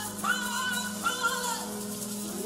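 Live amplified music: a woman singing held, gliding notes into a microphone over a steady instrumental backing.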